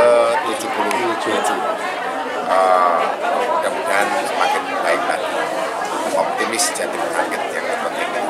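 Speech: a man talking, with the chatter of many voices behind him.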